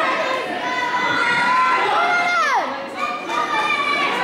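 Spectators, many of them children, shouting and cheering at a youth taekwondo sparring match, with several long, high shouts sliding down in pitch over the crowd noise.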